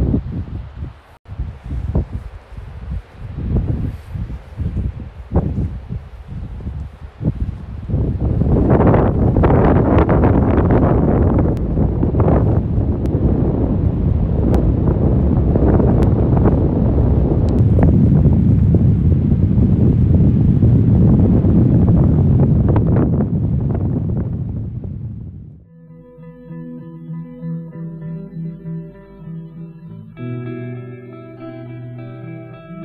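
Wind buffeting the microphone, gusty at first and then heavy and continuous. About four-fifths of the way through the wind cuts out and acoustic guitar music begins.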